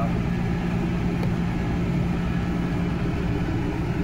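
Steady drone of running computer-room air-conditioning machinery: an even fan whoosh with a constant low hum underneath.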